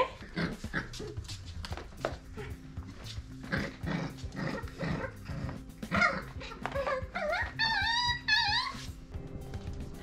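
A litter of Australian cattle dog puppies play-fighting, with soft scuffling and clicks and, in the second half, several high whines that rise and fall in pitch.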